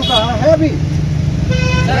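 A vehicle horn sounds once near the end, a single steady toot about half a second long, over a steady low rumble of street traffic.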